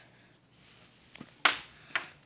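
Quiet, then three short, sharp clicks in the second half, the middle one the loudest.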